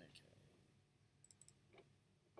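Near silence with faint computer mouse clicks: one click at the start and a quick run of three just past the middle.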